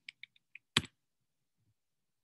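Several light computer-keyboard clicks, then one sharper, louder click a little under a second in.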